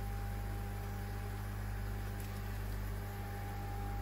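Steady machine hum, with a low drone and a higher held tone over an even hiss, running unchanged throughout.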